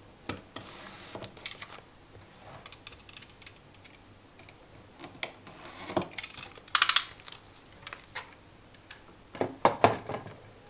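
Penknife cutting open a small cardboard box, with scraping and clicking as the box is handled on a wooden table. The loudest part is a quick run of sharp clicks about seven seconds in, and a few knocks come near the end.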